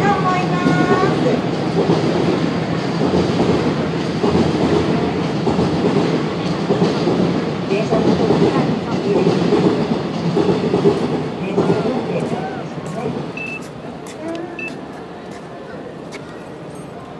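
A train running past: a steady rumble and rattle of wheels on track that fades away from about twelve seconds in, with voices over it.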